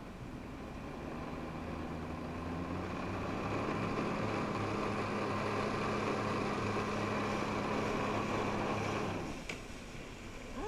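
Personal watercraft engine powering a Flyboard, throttled up so that it builds over the first few seconds and then holds a steady high pitch, with the hiss of the water jets. The engine drops away sharply about nine seconds in.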